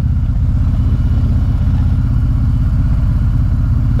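Harley-Davidson Road King's V-twin engine running steadily while the motorcycle cruises, a low, even engine note with no change in speed.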